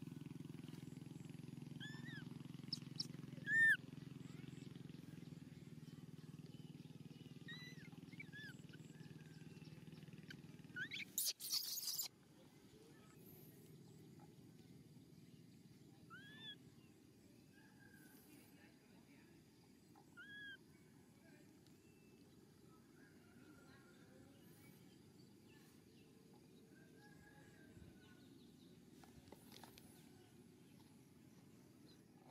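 Faint outdoor ambience: a steady low hum for the first eleven seconds, brief arched chirps every few seconds, and a loud rustling burst about eleven seconds in.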